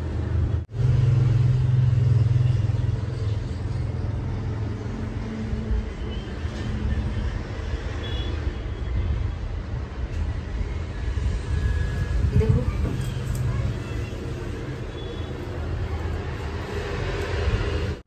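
A steady low rumble, with faint voices in the background.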